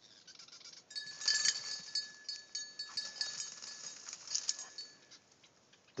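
A small bell on a bird dog's collar jingling as the dog moves through tall reeds. The tinkling starts about a second in, continues unevenly, and fades out near the end.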